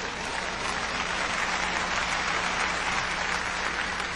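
Audience applauding, the clapping swelling slightly and holding steady.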